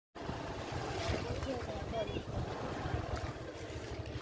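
Wind buffeting the microphone, an uneven low rumble, with faint voices in the background.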